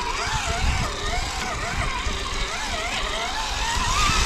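Electric motor and geartrain of an Axial SCX10 III 1:10 scale RC crawler whining, the pitch rising and falling several times a second as throttle and load change while it crawls over rough, muddy ground, with a low rumble underneath.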